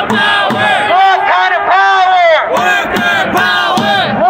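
Protesters shouting a chant at a rally, loud and rhythmic, the voices rising and falling with each repeated phrase.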